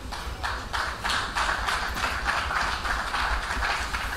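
Audience clapping in rhythm, about three claps a second.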